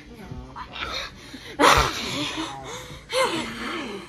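Girls' wordless voices, squealing and laughing, with a loud sudden outburst about one and a half seconds in and another about three seconds in.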